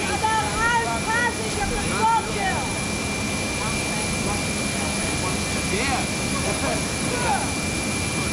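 Jet aircraft engines running steadily on an airfield, a constant even noise with a thin steady high whine, under a man's talking in the first couple of seconds.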